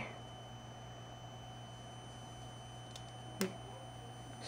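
Quiet background with a steady low hum. About three seconds in there is a faint tick, then a brief soft knock, as a grounded screwdriver touches the charged plate of a homemade aluminium-plate capacitor and discharges it with a small spark.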